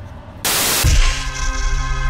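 A brief burst of static hiss, then a logo intro sting: a deep bass hit followed by a sustained synthesizer chord that rings on.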